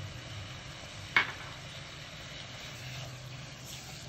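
Chicken pieces and ground spices frying gently in ghee in a nonstick wok: a low, steady sizzle, with one sharp click about a second in.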